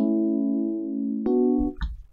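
Chords from a software instrument driven by the MIDIQ chord sequencer, each held for a half note. A new chord strikes at the start and another about 1.3 seconds in, then the sound dies away near the end.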